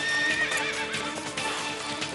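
A horse whinnying about half a second in, over background music, as the chariot sets off.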